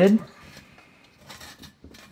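Metal jar lid being screwed onto the threads of a glass jar: faint scraping and a few light clicks of metal on glass, most of them about a second and a half in.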